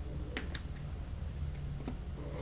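A few light clicks of fingers working a Chromebook laptop: two quick clicks about a third of a second in and a fainter one near the end, over a low steady hum.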